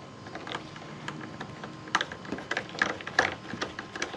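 Hand screwdriver driving a screw into a wall-mounted metal port fitting: a run of irregular light clicks and taps of the tool and metal, louder in the second half.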